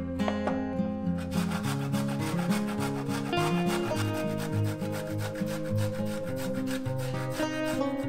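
Fresh ginger root being grated on a stainless-steel box grater: quick rasping strokes in a steady rhythm, starting about a second in. Acoustic guitar music plays underneath.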